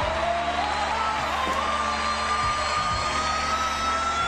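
Live concert recording of a female soul vocalist singing one long note that slides up in pitch and is then held high and steady, over band accompaniment.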